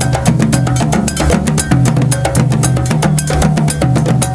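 West African drum ensemble of djembes and dunun drums playing a fast, steady rhythm, with a metal bell struck in time among the drum strokes.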